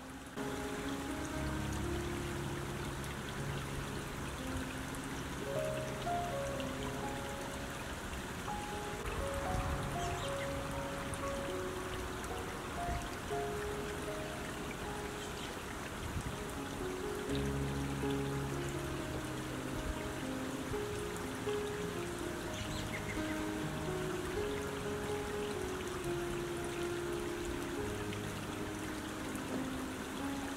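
Slow, soft background music of long held notes that change every second or two, over the steady rush of a shallow creek running over stones.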